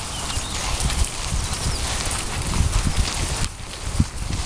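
Footsteps walking through grass: irregular low thuds under a steady rustling hiss.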